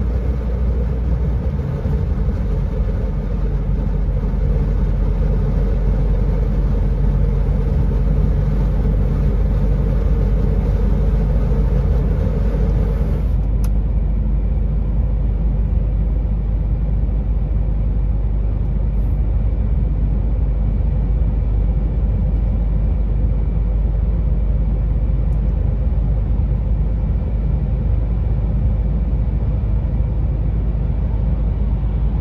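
Steady engine and road drone heard inside a moving vehicle at cruising speed. About 13 seconds in, a higher hum stops suddenly and only the low rumble goes on.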